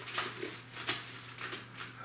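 Sealed Mylar food-storage bags crinkling in short, separate rustles as a hand presses and handles them, over a faint steady low hum.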